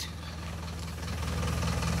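Mercedes-Benz Vario 814D mini coach's four-cylinder diesel engine idling steadily with a low, even beat.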